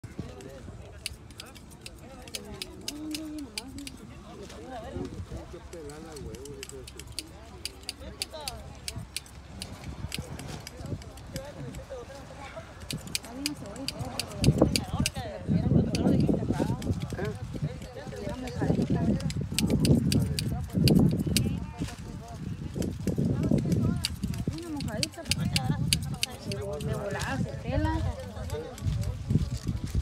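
Indistinct talk from several people, growing louder and fuller from about halfway through. Many sharp little clicks and snaps run through the first half.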